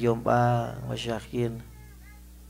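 A man's voice amplified through a microphone and PA, in drawn-out phrases with long held, gliding vowels over a steady low hum. The voice stops about a second and a half in.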